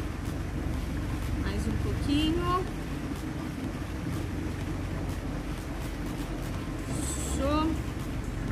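Steady low rumble of outdoor background noise, with two brief rising voice-like cries: one about two seconds in and one near the end.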